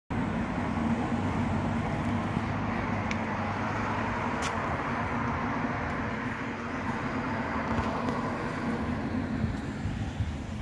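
Steady road traffic noise, with the low, even hum of motor vehicle engines and a couple of faint ticks.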